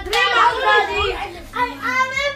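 Excited voices of children and adults talking and exclaiming over one another.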